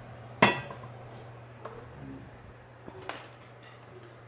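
Stainless steel saucepan set down on a glass-top stove: one sharp metallic clank with a short ring about half a second in, then a few light clinks.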